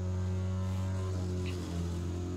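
A steady, low machine hum with an even set of overtones, unchanging throughout.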